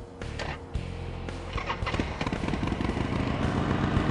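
2005 Harley-Davidson Sportster 1200 Custom's air-cooled 1200cc V-twin being started: a short crank, then the engine catches about a second and a half in and idles with a rapid, even pulsing that grows slowly louder.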